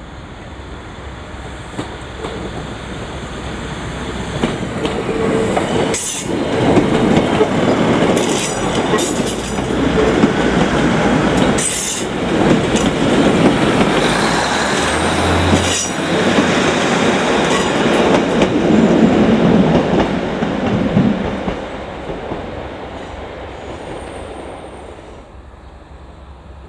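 Two coupled Class 156 Super Sprinter diesel multiple units pulling away under power and running past close by, their underfloor Cummins diesel engines working over the noise of the wheels on the rails. It grows louder over the first few seconds, stays loud while the carriages go past, then fades as the train draws away.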